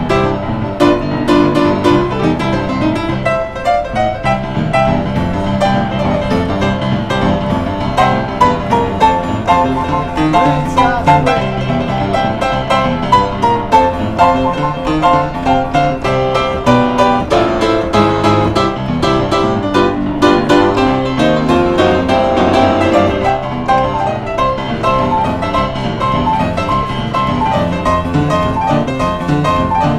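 Upright street piano played solo: a busy, lively piece with many notes in quick succession over a running bass pattern.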